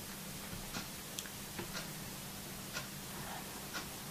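Faint room tone: a low steady hum with a few light ticks at uneven intervals.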